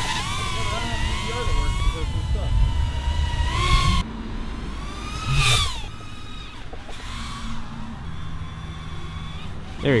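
Eachine QX90 Frog brushed micro quadcopter's motors and three-blade props whining in flight, the pitch rising and falling with throttle. The sound changes abruptly about four seconds in, and there is a louder rising-and-falling swoop about five and a half seconds in.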